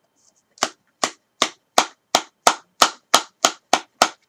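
A can of dip (moist smokeless tobacco) being packed: about ten sharp, evenly spaced taps, roughly three a second, as the lid is struck with a finger to pack the tobacco down before opening.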